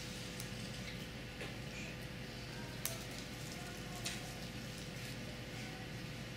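Water boiling in beakers on hot plates: a steady soft bubbling hiss, with two light clicks about three and four seconds in.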